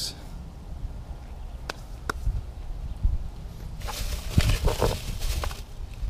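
Handling noise while picking up tools for removing the spark plugs: a couple of sharp clicks, then about four seconds in a burst of rustling and metal clinking as a chrome socket and extension are picked up and fitted together.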